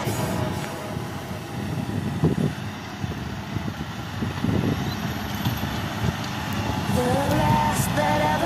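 Claas Axion tractor running under load as it pulls a cultivator across the field, a steady rough noise without a clear pitch. About seven seconds in, a song with a melody starts over it.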